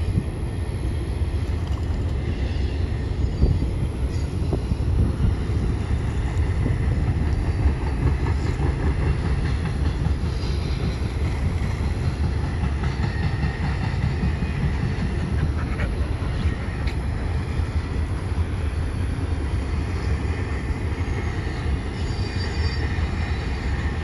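Steady low rumbling noise with a faint hiss over it, unbroken and without distinct events.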